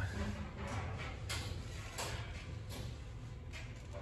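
A few faint clicks and knocks over low background noise, spaced irregularly about half a second to a second apart.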